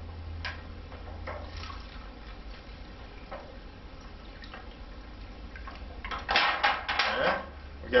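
Faint knocks from handling, then about six seconds in a short splash of water poured from an aluminium foil pan into a cup of dirt, lasting about a second.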